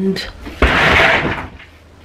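An interior door being opened: a soft knock about half a second in, then a short rushing scrape that lasts under a second.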